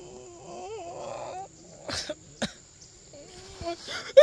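A man groaning in pain, then two short coughs about two seconds in, and a low moan near the end.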